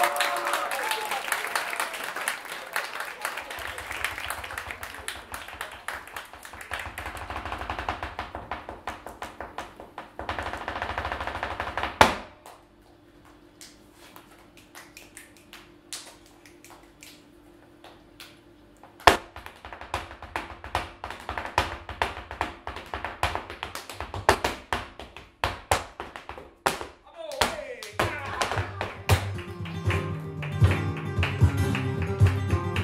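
Flamenco zapateado: a dancer's shoes striking a wooden stage in fast runs of heel and toe beats. The first run ends in one hard stamp about 12 seconds in, followed by a few single stamps, a second fast run, and scattered strikes, with acoustic flamenco guitar entering near the end.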